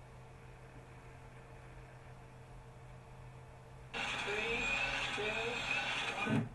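A faint steady room hum, then about four seconds in a loud steady hiss cuts in abruptly. It is the soundtrack of space shuttle satellite-deployment footage starting to play over the room's loudspeakers, with a couple of short rising tones in it.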